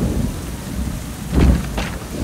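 Heavy rain pouring down with thunder rumbling, swelling loudest about a second and a half in.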